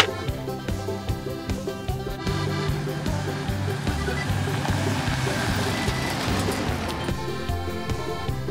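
Background music throughout. A single sharp click at the very start, a toy foam-dart blaster firing. Then the tyre-and-engine noise of a motorhome driving along a gravel road swells in the middle and fades about seven seconds in.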